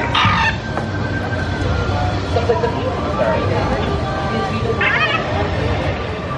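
Two short, harsh squawking calls from a walkaround puppet of Kevin, the giant bird from Up, one at the very start and one about five seconds in, over crowd chatter.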